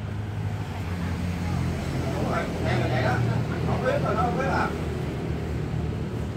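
A steady low motor hum, with indistinct voices from about two to five seconds in.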